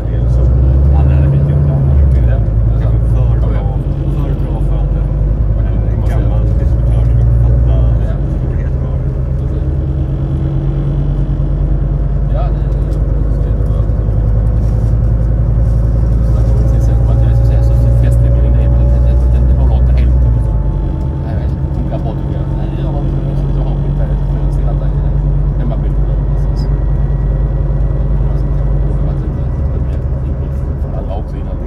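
Rail-replacement bus running, heard from inside the passenger cabin: a deep engine and road rumble that pulls harder twice and eases off about two-thirds of the way in, with faint whines that rise in pitch as the bus gathers speed.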